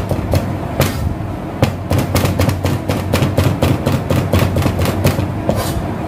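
Cleaver chopping carrots into thin sticks on a plastic cutting board: a quick run of sharp knocks, several a second, over a steady low hum.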